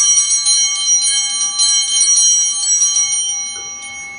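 Altar bells shaken in a quick peal, about four or five strikes a second, ringing on and fading near the end. This is the bell rung at the elevation of the chalice during the consecration of the Mass.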